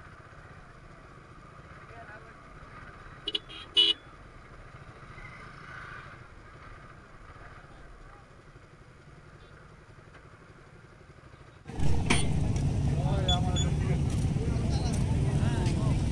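Motorcycle riding slowly, its engine a faint low rumble, with two short sharp sounds about three and a half seconds in. Near the end the sound jumps suddenly to a much louder steady outdoor rush.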